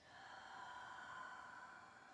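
One long, audible exhale lasting about two seconds. It swells in, peaks around a second in and fades away toward the end.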